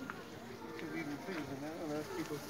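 Indistinct chatter of several people's voices overlapping in the background, with no clear words.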